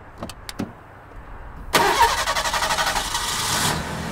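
A car's ignition key clicks in the lock, then about two seconds in the starter cranks the engine with a fast, even chatter for about two seconds, and the engine catches and settles to a steadier run near the end.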